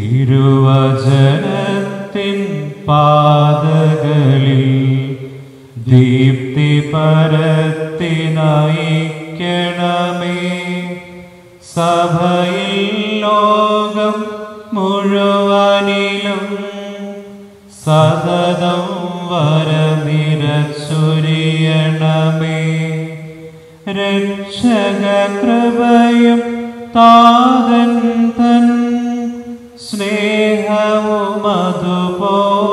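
A man's voice chanting a slow liturgical hymn, singing long held notes in phrases a few seconds long with short breaks between them.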